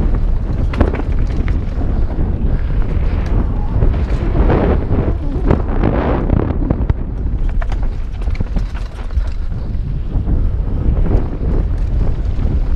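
Wind buffeting a helmet-mounted action camera's microphone at speed, a continuous low rumble, with the rattle and knocks of a mountain bike running fast over a rough dirt trail.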